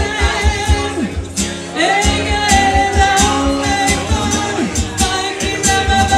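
Live pop song: a woman singing lead with guitar accompaniment over a steady beat.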